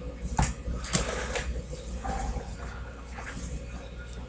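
Handling noise close to a webcam microphone: two short knocks or rustles about half a second and a second in, and a faint short voice-like sound around two seconds, over a steady low electrical hum.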